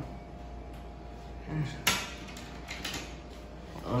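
A sharp click about two seconds in, then a few lighter clicks about a second later, over a steady low hum.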